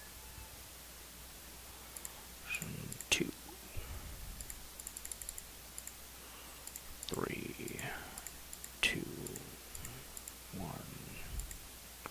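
Faint clicking of a computer mouse and keyboard, including a quick run of small clicks about halfway through, with a few brief quiet voice sounds in between.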